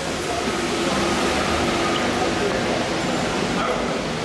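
Busy city street ambience: a steady wash of traffic noise and the voices of passers-by.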